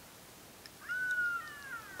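A jackal calling some way off: one long, high call that slides slowly down in pitch, starting about a second in.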